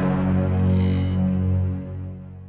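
Background music: a deep, steady drone with a high shimmering layer over it for about the first second, fading near the end. It is part of a dramatic cue that repeats in a loop.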